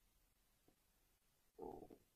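Near silence: room tone, with one brief faint muffled noise near the end.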